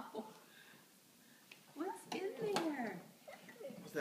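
A toddler vocalizing without words for about a second, its pitch gliding down, with a couple of light clicks mixed in.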